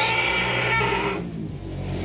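Cattle mooing: a single pitched call lasting about a second, followed by a low steady hum.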